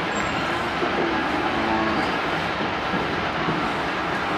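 Steady rumbling background noise of a livestock yard, with no distinct knocks or calls standing out.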